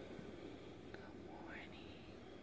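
Faint whispering close to the microphone.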